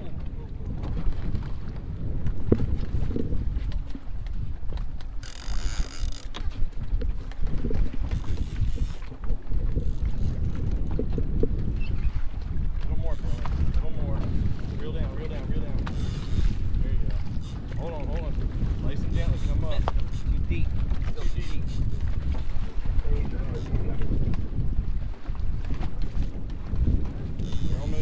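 Wind buffeting the microphone over the low, steady rumble of a boat at sea, with water washing along the hull; a brief hiss about five seconds in.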